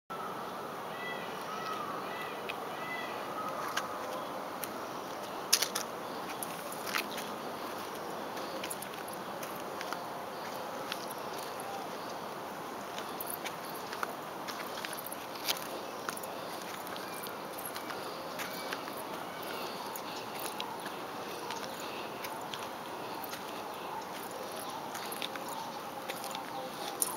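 Steady outdoor background noise with scattered sharp clicks and knocks from the handheld camera being handled, and a few faint high-pitched calls in the first few seconds.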